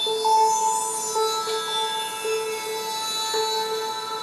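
Live band music without singing: acoustic guitar and electronic keyboard playing a repeating figure of short notes.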